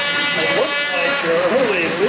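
Snocross racing snowmobiles, 600 cc two-strokes, revving hard as they come through the course. Their high engine note is strongest in the first second and then fades, with an announcer's voice over it.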